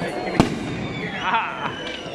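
One sharp firecracker bang about half a second in, followed by a few fainter pops, with a high-pitched shout from the crowd in between.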